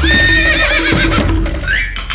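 A horse whinnies once for about a second and a half, held at first and then wavering in pitch before it fades, over background music.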